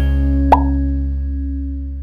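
Intro jingle ending on a sustained low chord that slowly fades out, with a short pop sound effect about half a second in.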